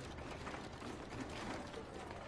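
Rickshaws rolling in: faint, irregular mechanical clicking and rattling of their wheels.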